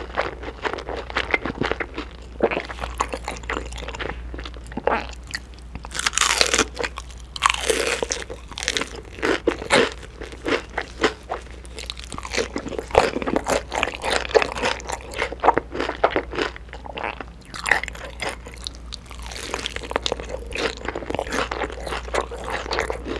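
Crunching bites and chewing of crispy, sauce-glazed fried chicken (KFC smokey barbecue chicken), the coated crust crackling in many quick crunches, with busier bursts of crunching near the middle and toward the end.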